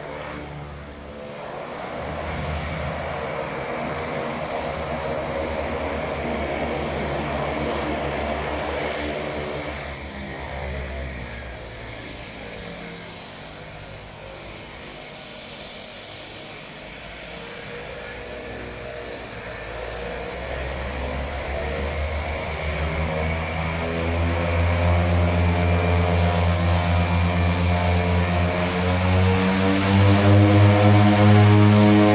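A de Havilland Canada Twin Otter's twin PT6A turboprop engines running on the ground: a steady propeller drone with a high turbine whine above it. It eases off around the middle, then grows much louder from about two-thirds of the way in.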